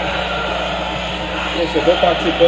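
Steady wash of stadium background noise on a football broadcast, with no distinct events in it. A man's voice begins near the end.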